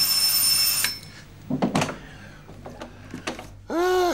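Electric doorbell ringing once, loud and steady for about a second, as its wall button is pressed. A few short clicks and knocks follow.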